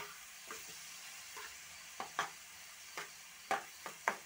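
Shredded cabbage and chopped tomato sizzling in oil in a frying pan, with a spatula scraping and knocking against the pan about seven times as the vegetables are stirred.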